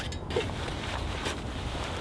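Wind on the microphone, a steady low rumble, with a few faint knocks as cot leg brackets are handled.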